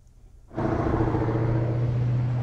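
Brief near silence, then about half a second in a steady low machine hum starts suddenly over a bed of broad background noise, holding level.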